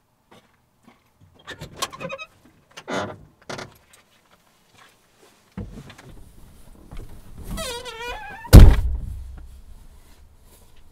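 A vehicle's door swings shut with a wavering squeak and is slammed with one heavy thunk near the end. Before that come a few shorter knocks and rattles from the door being opened and someone climbing in.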